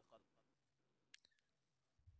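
Near silence in a pause of a voice recording, with two very faint clicks a little past a second in.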